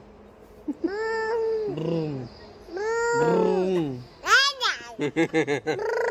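Wordless, high-pitched vocal calls from a small child, each rising and falling in pitch. There are two long ones, then a sharper higher squeal, then a quick run of short calls near the end.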